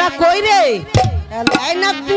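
Live jatra stage music through the loudspeakers: a voice at a microphone gliding up and down in wordless cries, cut across by several sharp drum strokes.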